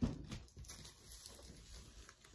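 Faint handling noise from a large 24-by-36 picture frame being lifted and turned over: a light knock at the start, a few soft taps, then quiet rustling.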